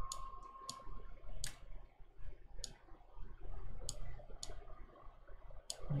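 Computer mouse clicking: about eight sharp, short clicks at irregular intervals, over faint steady background noise.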